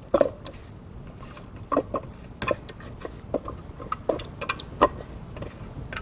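A utensil scraping and knocking against a plastic food processor bowl as finely ground cranberries are worked out into a glass bowl: a scatter of short, irregular knocks and scrapes.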